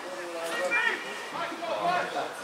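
Several indistinct voices shouting and calling over one another across a Gaelic football pitch during play.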